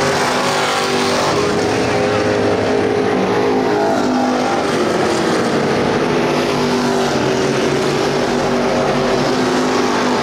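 Several dirt-track race car engines running hard around the oval, their overlapping pitches rising and falling as the cars go through the turns and down the straights.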